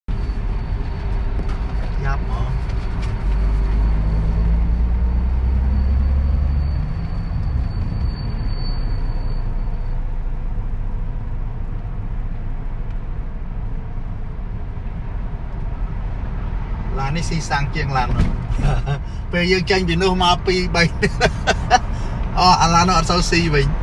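Steady low rumble of a moving car's engine and tyres heard from inside the cabin, with a faint thin high tone over it for roughly the first ten seconds. A man starts talking near the end.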